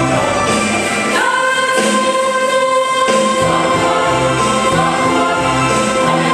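Mixed choir singing in parts. About a second in, the low voices drop out and the upper voices hold a high note; the low voices come back in about three and a half seconds in.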